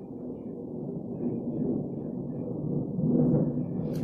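Steady low background rumble, with no speech, swelling slightly about three seconds in.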